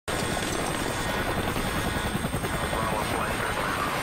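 Helicopter rotor chopping steadily in fast, even pulses, starting abruptly. Near the end a higher voice-like sound rises over it.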